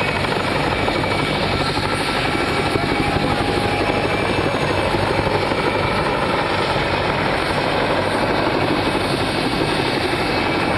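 Two Mil Mi-2 helicopters flying in formation close overhead: a loud, steady rapid beat of their main rotors over the high steady whine of their twin turboshaft engines.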